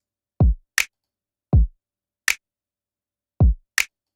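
A sampled electronic kick drum thumps three times, each a deep hit that drops fast in pitch, alternating with short bright ticks about every second and a half, through the Distressor compressor plugin. The kick's transient click is enhanced and carries a little distortion.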